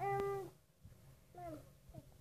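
A young child's voice: a held, even-pitched vocal sound of about half a second, then a short falling one about a second and a half in.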